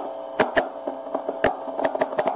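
Fingers tapping a homemade microphone, the taps coming through a small battery amp turned way up: about six sharp clicks at uneven spacing over a steady amplifier hum.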